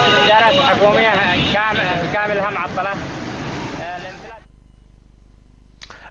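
A man talking in Arabic over street and traffic noise, all fading out about four seconds in.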